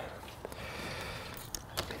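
Low steady background noise with a few faint clicks, in a pause between speech.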